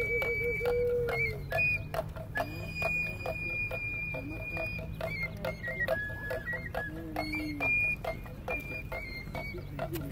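Voladores' cane flute playing a shrill melody of long held high notes that step up and down, over a small hand drum beaten steadily about two to three times a second.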